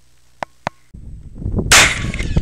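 Two short clicks, then a cut to outdoor background noise and a single loud handgun shot near the end.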